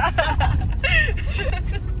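Steady low engine and road rumble inside a moving pickup truck's cab, with brief voices and laughter over it in the first second and a half.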